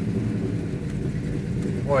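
1967 Plymouth GTX's 426 Hemi V8 running with a steady low rumble as the car drives slowly under light throttle, heard from inside the open-top cabin.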